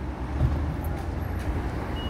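Steady low rumble of road traffic on the street.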